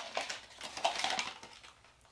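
Crumpled brown packing paper crinkling and rustling in the hands as a ceramic coffee mug is unwrapped from it, in irregular crackles that die away near the end.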